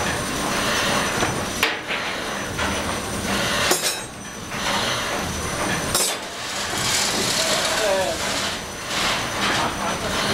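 Reciprocating marine steam engine of the S/S Bjørn running: a steady mechanical clatter and hiss from the moving cranks and rods, with three sharper knocks along the way.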